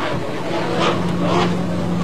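Offshore racing powerboat engine running at a steady pitch.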